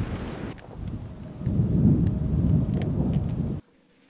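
Wind rumbling on the microphone, louder through the middle and cut off suddenly about three and a half seconds in.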